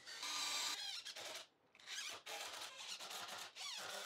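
DeWalt cordless drill boring an angled hole into a pressure-treated wood brace, running in several short bursts with its pitch rising as it spins up.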